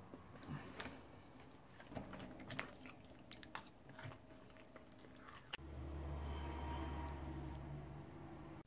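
Fork digging into apple pie: sharp clicks and crunchy scrapes of the fork against the flaky crust and the pie tin, with chewing. About five and a half seconds in this gives way to a steady low hum.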